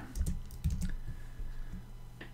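Computer keyboard being typed on: a quick run of keystrokes that thins out to a few spaced clicks after about a second.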